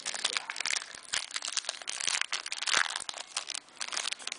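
Foil wrapper of a Press Pass trading card pack crinkling as it is handled and opened: a dense, irregular run of crackles.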